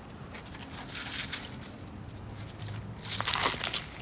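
Paper sandwich wrapper crinkling and a sandwich being bitten and eaten, in two short bursts: about a second in and around three seconds in.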